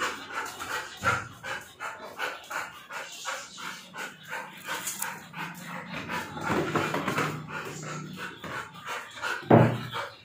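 Black Labrador panting in quick, even breaths.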